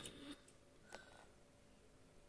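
Near silence, with a couple of faint short clicks in the first second.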